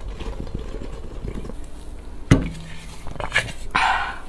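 Broth being drunk straight from a tipped-up bowl. About two and a half seconds in comes a sharp knock with a short ring, as the bowl is set back down on the table, followed by slurping from a spoon near the end.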